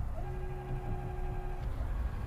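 Electric steering motor of a Minn Kota trolling motor whining at one steady pitch for about a second and a half as it swings the motor head to a new heading, then stopping.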